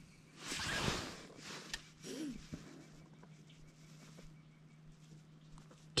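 Quiet handling noise: a short rustle of clothing and gloved hands near the start and a single click, then near quiet with a faint low steady hum.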